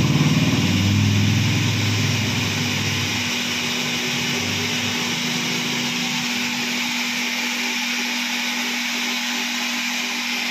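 Electric pumps of a running reverse-osmosis water plant, a steady hum with a constant tone over an even whirring hiss. A deep rumble under it fades out about three seconds in.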